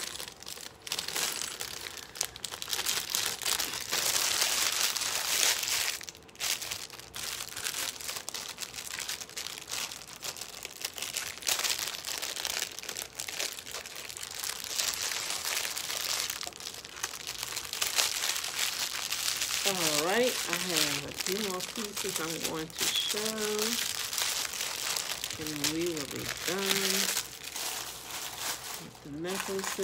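Plastic bags crinkling and rustling while jewelry is handled, almost without pause for the first two-thirds. A wordless voice, humming or murmuring, follows near the end.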